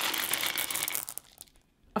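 A stream of baking beads pouring from a plastic tub into a pastry-lined pie tin, a dense rattle of many small clicks that stops about a second in.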